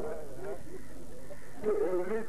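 A man's loud, chanted recitation through a public-address microphone. It fades in the middle and comes back strongly near the end.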